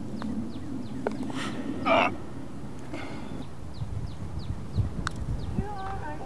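Birds chirping in short, thin, falling notes, repeated again and again, over a low outdoor background. A single light tap of a putter striking a golf ball.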